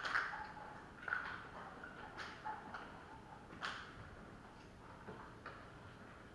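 Scattered faint clicks, ticks and rustles of people handling and eating the communion bread in a quiet room, with a few sharper ticks among them.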